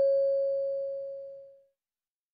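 A single clear chime tone from the listening-test recording, struck just before and ringing on as it fades away, dying out about one and a half seconds in. It marks the end of a dialogue, before the question is read.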